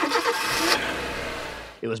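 Car engine revving and driving off in a radio-play sound effect: a loud burst of engine noise that fades away over about a second and a half.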